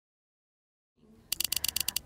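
Digital silence, then faint room tone and, about a second and a quarter in, a quick run of about ten sharp clicks, roughly a dozen a second.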